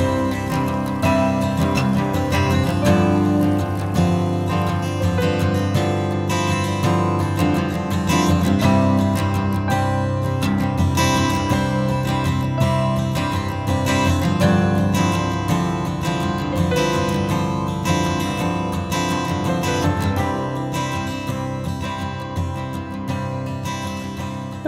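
Background music led by acoustic guitar, plucked and strummed at a steady, even level.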